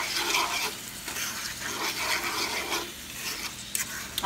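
Ackee and saltfish with sautéed peppers and onions being stirred in a hot frying pan: the food sizzles and scrapes against the pan in repeated strokes, about one a second.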